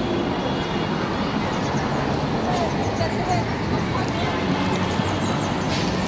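Busy city street ambience: a steady wash of road traffic with passers-by talking.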